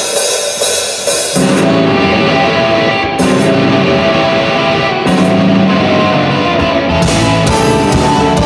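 Rock band playing live on stage: electric guitars over a drum kit with cymbals. The low end fills in about a second and a half in.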